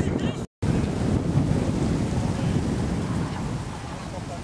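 Wind buffeting the microphone: a loud, steady low rumble that cuts out completely for a moment about half a second in.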